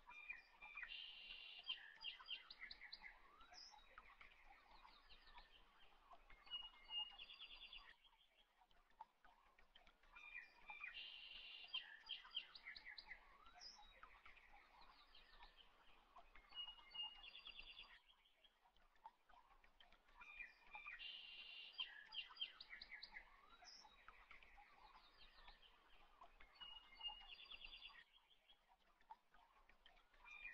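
Faint bird chirps and trills, in a short recording that loops: the same sequence repeats about every ten seconds with brief gaps between.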